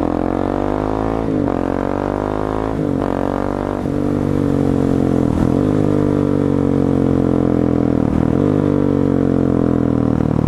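2017 Husqvarna 701 Supermoto's single-cylinder engine accelerating hard through the gears on a break-in run: the revs climb, drop at an upshift about a second and a half in and again near three seconds, climb once more, then settle into a steady, slowly falling note.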